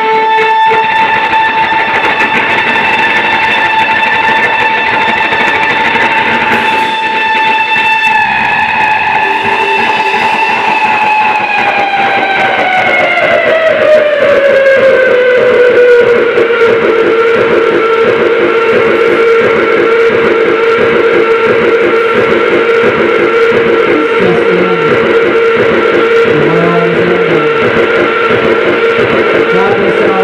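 Electric guitar through effects pedals: a loud, distorted, sustained drone. One held tone slides down about an octave partway through, then stays at the lower pitch.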